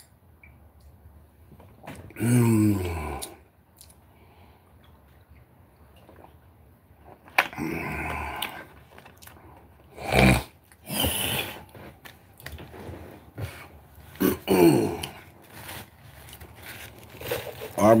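A man clears his throat with a low, falling voiced sound about two seconds in. A few more short, separate vocal and handling noises follow, and a spoken word comes at the very end.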